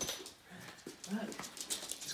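A small dog giving a few short, soft whimpers, with a sharp click at the very start.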